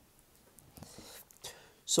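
A man breathing and murmuring softly in a pause, then starting to speak again near the end.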